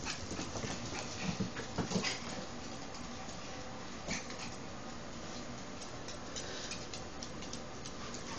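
Small dogs' claws clicking and pattering on a hardwood floor as they scramble about in play, with a cluster of louder knocks about one to two seconds in.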